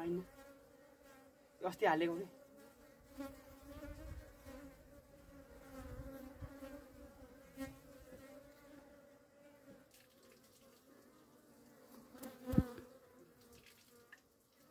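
Honey bees buzzing around the entrance holes of a log hive, a steady hum. One bee flies close past about two seconds in, its pitch bending, and near the end a louder close buzz comes with a brief low bump.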